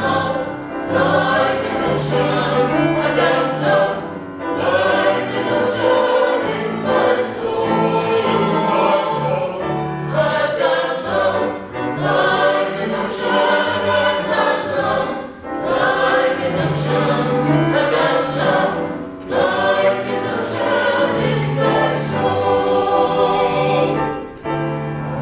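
Mixed choir of men and women singing a hymn in parts, accompanied by an upright piano.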